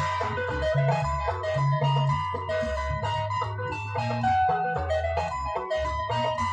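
Electric bass and electric guitar playing together: the bass plays a prominent low line of changing notes, with a higher guitar melody above it.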